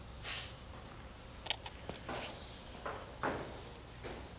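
Faint handling and movement noises: a few soft shuffles and rustles with a couple of sharp clicks about a second and a half in, as a handheld camera is carried to a new spot.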